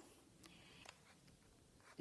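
Near silence: room tone, with a couple of faint ticks in the first second.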